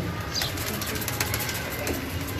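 A pigeon's wings fluttering and feathers rustling as the bird is held and its wing folded, a run of quick brushy ticks.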